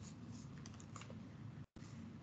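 Near silence: faint room tone with a few soft clicks, and the sound cutting out briefly near the end.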